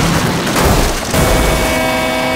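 Soundtrack sound effects of a car tumbling and crashing down a rocky cliffside: a dense, loud crashing din, joined about a second in by held dramatic music chords.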